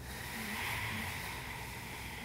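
Ujjayi breathing: one slow, soft breath drawn through a slightly constricted throat, a hiss that swells about half a second in and then slowly fades.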